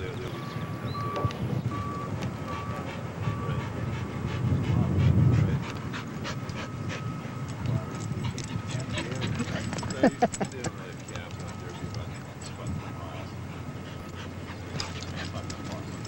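Dog panting close to the camcorder microphone over a steady low rumble of wind and handling noise, which swells about five seconds in. A few brief sharp sounds come about ten seconds in.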